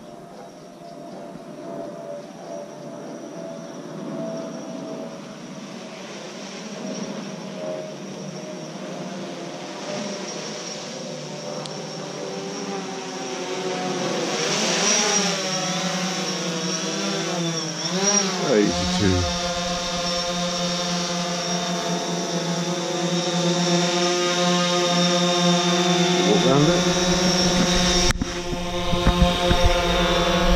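DJI Phantom 4 quadcopter's motors and propellers humming, growing louder as the drone flies in closer and descends. A little past the middle the pitch wavers up and down several times as it manoeuvres, then holds steady.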